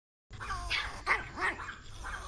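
Chihuahua barking angrily, three short barks in about a second.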